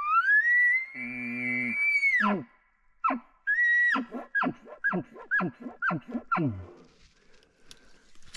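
A bull elk bugle: a long rising whistle held high for about two seconds, with a low growl beneath it for part of that time, then falling away. A short high note follows, then a string of about seven chuckles, each dropping steeply in pitch, two or three a second.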